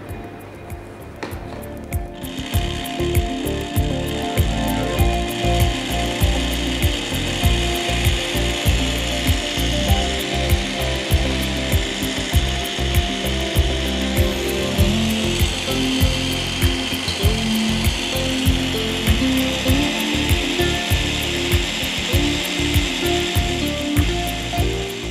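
Electric stand mixer starting about two seconds in and then running steadily, beating eggs and sugar in its steel bowl, with a fast regular clicking rattle from its drive.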